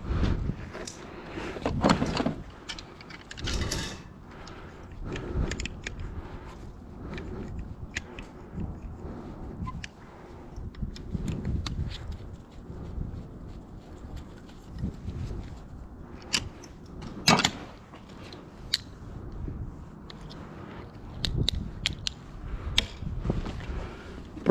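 Pliers working a cast-aluminum handle off a brass hose-bib valve: scattered metal clicks and knocks of handling, with one sharp click about 17 seconds in.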